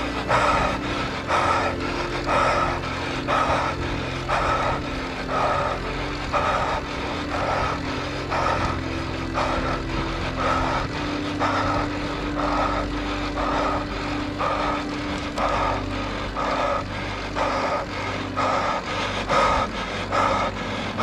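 A cyclist breathing hard in a steady rhythm, about two puffs a second, from the effort of climbing, over the steady low hum of tyres and bike on the road.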